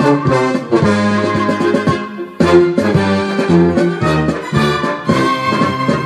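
Instrumental brass-band passage of a Korean military march song, with trumpets and trombones playing; the music breaks off briefly a little after two seconds in, then carries on.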